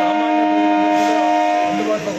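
A train horn sounding one long, steady blast of several pitches at once, cutting off abruptly just before the end.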